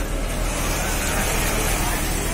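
Steady whir and hum of industrial sewing machines running on a garment factory floor, with a constant low hum underneath.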